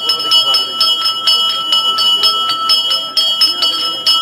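A Hindu temple bell rung rapidly and continuously, about four strikes a second, its ringing tones carrying on between strikes.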